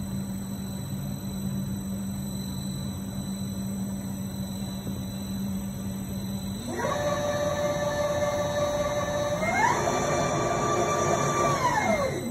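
Automated shock dyno running a damper test: a steady low hum during the gas-force test, then the drive motor whines up to a steady pitch about seven seconds in for the first test speed. It steps up to a higher whine for the second speed about two and a half seconds later and winds down near the end.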